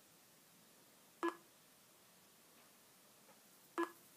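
Two short electronic beeps from the laptop, about two and a half seconds apart, the Zu3D stop-motion software's capture sound as the time-lapse takes each frame.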